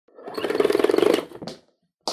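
Logo-animation sound effect: a rapid mechanical-sounding rattle that swells and fades over about a second, followed by a short swish.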